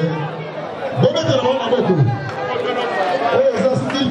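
Voices: people talking over crowd chatter.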